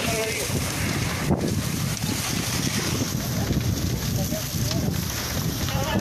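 Wind buffeting the microphone with a low, irregular rumble, over the steady rushing noise of a house fully ablaze.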